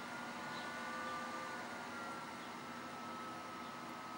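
Steady fan noise with a faint, slightly wavering high whine.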